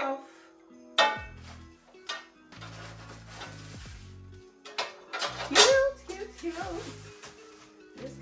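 Background music with a steady bass line, over the crinkle of a plastic bag and knocks of skillet parts being unpacked: a sharp click about a second in, rustling in the middle, and a louder rustle-and-clatter as the glass lid comes out of its wrapping.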